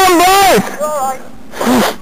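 A person's voice calling out in three short, wordless exclamations: a loud one at the start, a shorter one about a second in, and one falling in pitch near the end.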